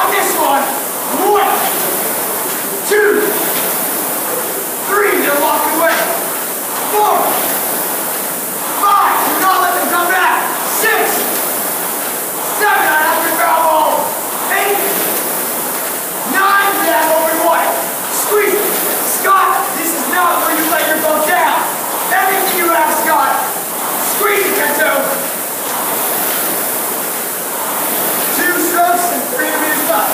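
Whoosh of a rowing machine's air-resistance flywheel, surging with each stroke during a hard 2K piece, under indistinct voices that come and go every second or two.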